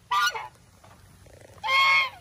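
Domestic white goose honking twice: a short honk just after the start and a longer one near the end.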